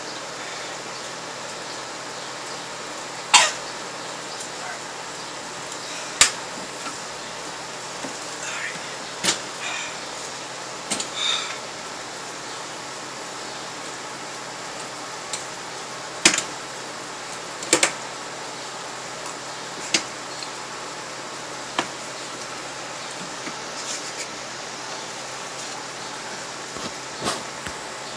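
Scattered short throat noises, swallows and small vocal sounds from a man drinking mustard, about ten brief ones spread through, over a steady hiss.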